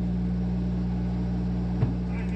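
Semi-truck diesel engine idling, a steady low hum heard from inside the cab, with one short click near the end.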